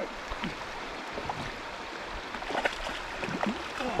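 Shallow creek water running steadily, with a few faint distant voices in the middle of it.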